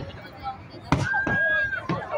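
Aerial fireworks shells bursting: a sharp bang about a second in and another near the end, with a crowd's voices and a drawn-out exclaiming voice between them.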